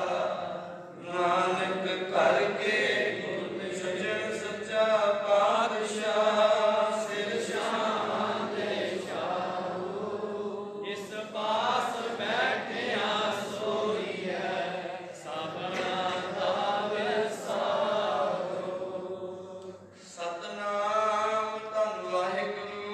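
A man's voice chanting a Sikh prayer in a sing-song recitation, with brief pauses about a second in and near the end.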